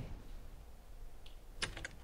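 Soft handling noise as two people sit down on a fabric sofa. A faint click comes about halfway, then a quick run of sharp little clicks and rustles near the end.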